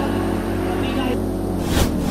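Background music holding a steady low chord, with a rushing noise coming in near the end.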